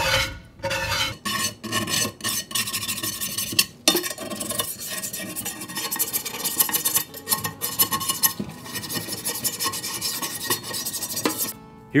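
A brush scrubbing the wet cooking surface of an old cast iron skillet, with quick rasping back-and-forth strokes that work the gunk off. The scrubbing stops shortly before the end.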